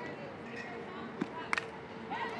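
Low ballpark crowd murmur, then a single sharp crack about one and a half seconds in as a softball bat hits a pitched ball.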